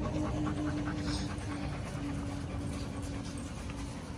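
A dog panting close to the microphone, quick breaths about five a second that fade out after the first second and a half, over a steady low hum.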